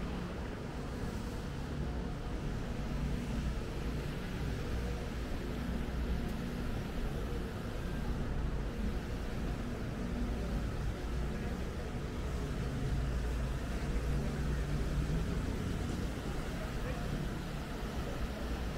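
Busy pedestrian street ambience: a steady low rumble with voices of passers-by talking.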